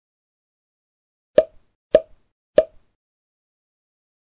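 Three short pop sound effects about two-thirds of a second apart, each followed by a faint smaller click, marking on-screen graphics popping into view.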